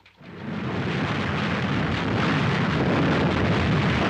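Continuous rumble of an artillery barrage, a battle sound effect in an old film soundtrack. It fades in over the first second, then holds steady and loud.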